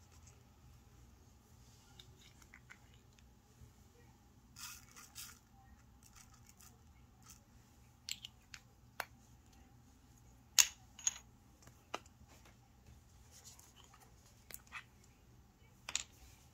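Clear plastic mixing cups and small craft items handled on a work table: scattered light clicks and taps, with a short rustle about five seconds in and the sharpest click about ten and a half seconds in, over a faint steady hum.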